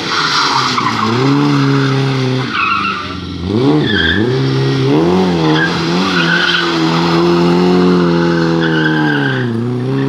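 Historic rally car engine revving hard as it approaches and takes a hairpin, its pitch dropping sharply twice with braking and gear changes and climbing again between. Short tyre squeals come in bursts as the car turns through the bend.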